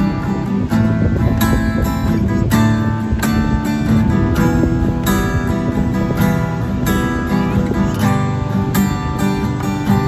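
Takamine acoustic guitar strummed through open chords in a steady, even rhythm, with the chord changing every few seconds.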